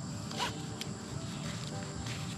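Nylon webbing strap of a Vevor safety pool cover pulled through its metal buckle: a short zipping rasp about half a second in and a lighter one soon after. Background music plays underneath.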